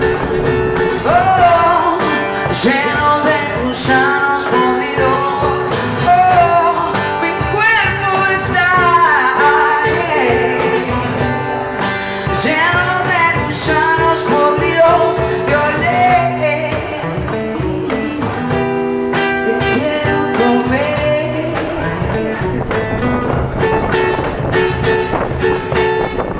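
Live acoustic band: a woman singing lead over a strummed acoustic guitar and percussion.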